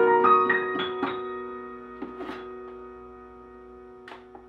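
Digital piano playing: a quick run of notes in the first second, then a held chord that slowly dies away over the rest.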